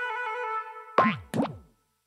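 A held musical chord fades away, then two cartoon 'boing' bounce sound effects with falling pitch come about a second in, a third of a second apart.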